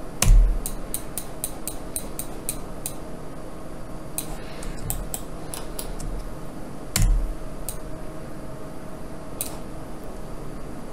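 Computer mouse clicks and keyboard taps: a quick run of about four clicks a second over the first three seconds, then scattered clicks. Two louder, deeper thumps stand out, one just after the start and one about seven seconds in.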